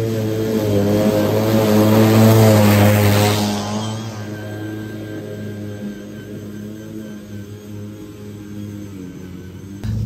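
EGO cordless self-propelled lawn mower cutting through grass 10–11 inches tall: a steady motor-and-blade hum with a hiss of cut grass. It is loudest in the first three seconds or so as it passes close, then fades as it moves away.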